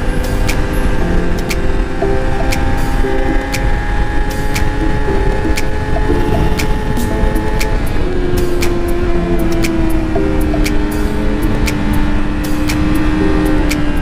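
Yamaha R6 sport bike's inline-four engine running steadily at cruising speed, with wind rushing over the camera microphone. Background music with a regular beat plays over it.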